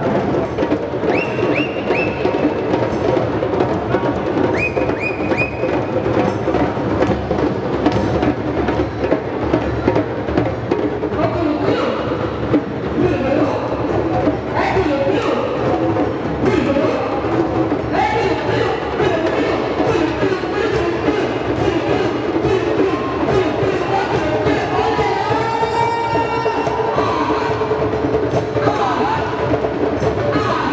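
Many djembes played together in a drum-circle jam: a steady, dense rhythm of hand-struck drumheads. Voices call and sing over the drumming in the second half.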